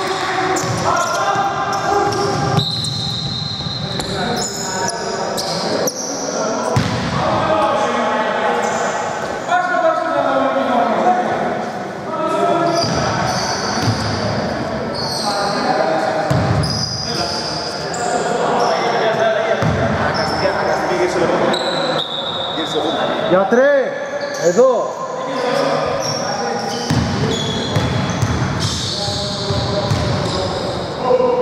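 Basketball bouncing on a hardwood gym floor during a game, with players' indistinct shouts and running steps echoing through a large hall.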